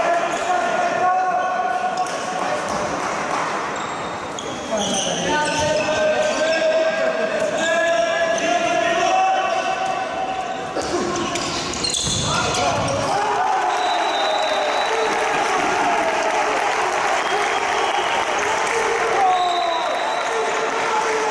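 A handball being dribbled and bouncing on an indoor court, with players and spectators shouting in the echoing sports hall.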